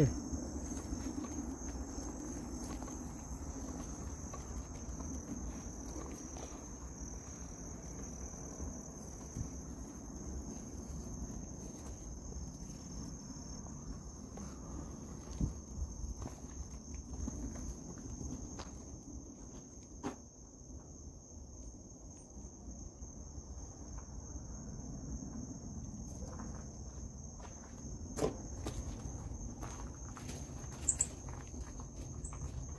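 Night insects, crickets among them, keep up one steady high-pitched trill, over footsteps through grass and brush. A few sharp clicks or snaps stand out, about midway and near the end.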